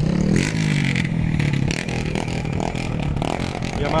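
Motorcycle engine running steadily, its pitch swinging briefly in the first second, with wind rumbling on the microphone.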